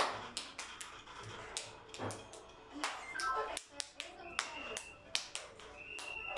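Music from a TV flag-quiz video during its answer countdown, with a run of sharp clicks and two short high beeps.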